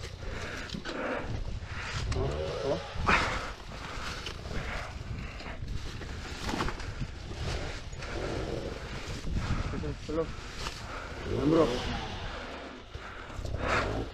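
Two-stroke enduro dirt bike engine, a Husqvarna TE 250, revving up and falling back several times as the rear wheel spins in loose dirt and leaves on a steep rock climb.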